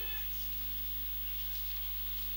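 Steady low electrical hum with a faint even hiss, the background of the microphone and sound system while no one speaks.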